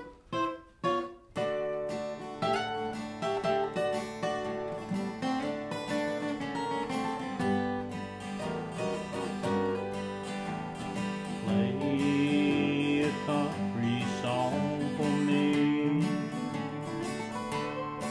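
Two acoustic guitars, an Epiphone and a dreadnought, playing the instrumental intro of a country song: it opens with a few separate strummed chords, then settles into steady rhythm playing with melody lines picked over it.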